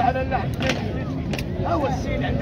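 Crowd of spectators murmuring outdoors, many overlapping voices with no clear words, with two short clicks or knocks in the first half.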